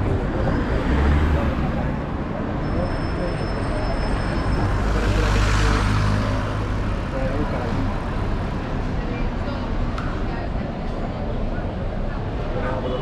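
Busy city street traffic with people chatting in the background; a car passes close by, its tyre and engine noise swelling and fading about five to six seconds in.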